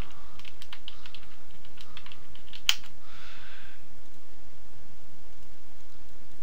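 Computer keyboard being typed on: a quick run of key clicks as a new name is entered, then a single sharper click a little under three seconds in.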